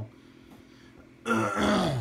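A man clears his throat once, a short, rough, loud burst starting about a second and a quarter in, after a quiet first second.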